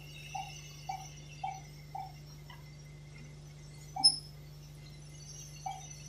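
Electronic pulse beeps from a patient monitor: a short mid-pitched tone just under twice a second, dropping out for a few seconds and resuming near the end. A single sharper, higher beep sounds about four seconds in. A steady low machine hum runs underneath.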